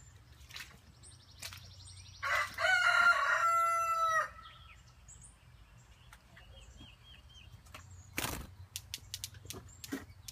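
A rooster crows once, a single held call of about two seconds, a couple of seconds in. Scattered light clicks follow, and a thump about eight seconds in.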